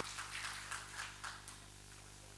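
Scattered hand claps from a small audience, thinning out and fading away over about a second and a half.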